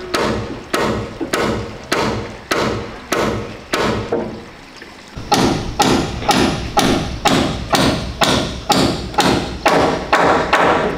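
Hammer blows driving nails into the porch roof, a steady run of about two strikes a second. After a brief lull near the middle, the hammering picks up again slightly faster.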